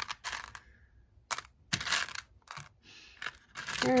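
Plastic buttons clicking and clattering against each other and the sides of a plastic storage box as hands dig through them, in short, scattered bursts with quiet gaps between.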